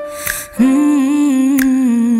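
A female singer hums one long held "umm" over the song's backing track. The note starts about half a second in, with light percussion under it.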